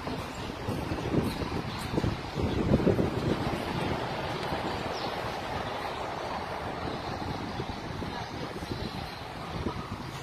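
Wind buffeting the camera microphone, low rumbling gusts in the first few seconds, then a steady noisy hiss.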